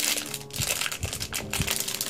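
A thin plastic bag crinkling as it is handled, in short irregular crackles.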